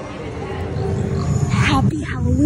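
Deep roar of the Gringotts dragon show effect, swelling in loudness from about half a second in, with people's voices over it.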